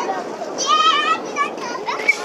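Children's high-pitched voices shouting and chattering, with one loud, wavering shout about half a second in.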